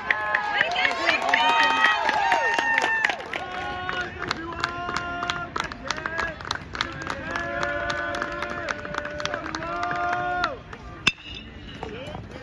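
Baseball crowd and dugout voices shouting and cheering, then chanting in long held notes over rhythmic clapping; one sharp crack about eleven seconds in.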